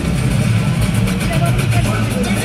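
An arena sound system playing the ice show's soundtrack: a voice over music with a quick, even ticking beat.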